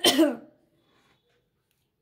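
A woman clears her throat once, briefly, in a short rasp at the very start, followed by near silence.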